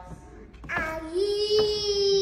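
A toddler's voice holding one long, high sung note, starting about a second in after a quiet moment.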